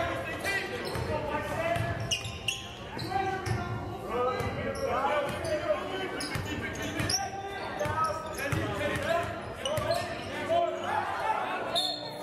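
Basketball game sound echoing in a large gymnasium: the ball bouncing on the floor among indistinct shouting voices of players and bench.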